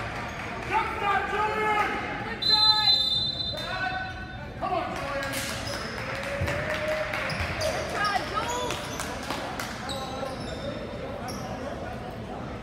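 Basketball game in a gym: players and spectators calling and shouting, a ball bouncing on the hardwood court, and a referee's whistle blown for about a second a little over two seconds in.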